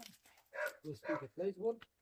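A young dog giving a few short barks in quick succession, starting a little under a second in, mixed with a woman's brief spoken word.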